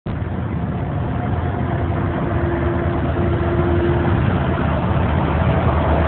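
School bus driving at highway speed, heard inside the cab: a steady drone of engine and road noise, with a faint whine for a couple of seconds in the middle.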